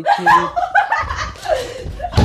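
People laughing and snickering, after a brief sung note at the very start, with a low rumble of the phone being handled against the microphone from about halfway.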